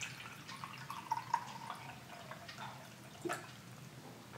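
Water pouring from a filter pitcher into a glass measuring cup: a faint trickling stream with a wavering pitch as the cup fills, easing off past the middle.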